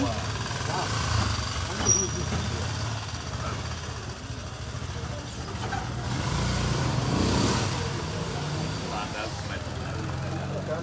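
Market background of people talking over a steady low engine hum, as of a vehicle idling, swelling a little about seven seconds in.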